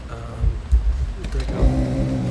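Small electric motor whining at a steady pitch, strongest from about a second and a half in, typical of a remote-controlled camera panning. A few low thumps come before it.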